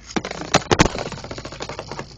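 Two Lego-brick spinning tops rattling and clacking against each other and the plastic stadium in a fast, continuous run of clicks, with a few harder knocks just under a second in as one strikes the other hard enough to nearly drive it out of the stadium.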